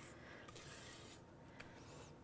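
Near silence, with faint scraping of a spatula pushing thick batter out of a stainless steel mixing bowl and one small tick about one and a half seconds in.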